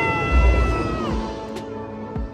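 Flight-simulator ride film's orchestral soundtrack playing loud: a held high chord that bends downward about a second in, over a deep rumble near the start as water sprays across the screen.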